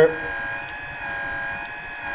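Tektro Bleed Pump machine's electric pump running steadily with a whine of several steady tones, pushing fresh mineral oil through a hydraulic disc brake system to purge the air bubbles.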